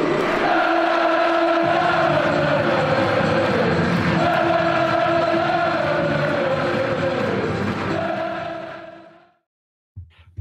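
Football crowd singing a chant together, its many voices holding a slow rising and falling tune; it fades out about eight seconds in.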